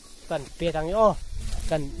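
Speech only: a man's voice talking in a few drawn-out phrases.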